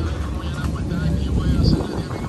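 Indistinct voices over a low rumble that fades about half a second in.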